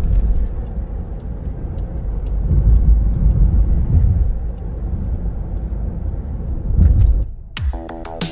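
Low, uneven road rumble of a car being driven, heard from inside the cabin. Near the end it cuts off abruptly and music with held electronic tones begins.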